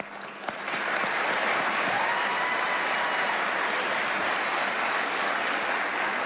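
Large audience applauding, building within the first second and then holding steady.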